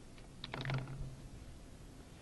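A short burst of computer keyboard keystrokes, a handful of clicks about half a second in, as a drafting command is typed.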